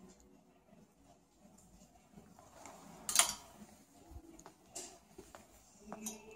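Clothes on hangers being handled and brushed past on a rack: faint rustling and a few small clicks, with one louder brush of fabric about three seconds in.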